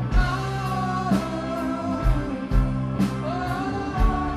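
Progressive rock band playing live: a lead vocal holds long sung notes over bass, guitar and keyboards, with drum hits marking the beat.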